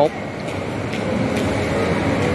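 Steady shopping-mall ambience: an even background hum from the building's air handling, with faint distant voices.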